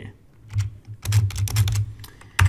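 Computer keyboard typing: a quick run of keystrokes starting about half a second in.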